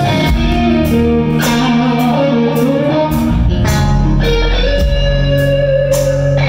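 Live band music: electric guitars playing a lead of long, bending, sustained notes over drums, with cymbal strokes keeping an even slow beat about twice a second.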